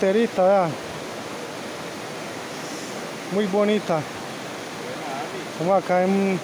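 Steady rushing of a creek's flowing water.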